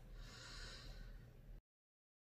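Near silence: a faint, soft breath-like hiss lasting about a second, then the sound cuts off suddenly to dead silence as the recording ends.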